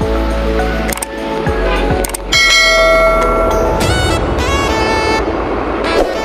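Background music with a subscribe-button sound effect laid over it: a couple of sharp clicks about a second in, then a bright bell chime just after two seconds that rings out and fades.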